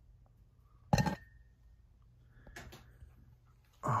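A single sharp knock about a second in, with a brief ringing tone after it, like a hard object bumped or set down among clutter, then a few faint handling sounds in an otherwise quiet room.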